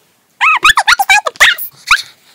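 A high-pitched voice giving a quick run of about eight short yips and squeals, each rising and falling in pitch, starting about half a second in.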